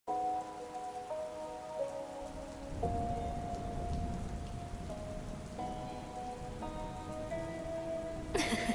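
Intro of a slow, sad emo-trap instrumental in G# minor: sustained minor chords that change about every second. A rain-like noise texture comes in under them after about two seconds, with no drums yet.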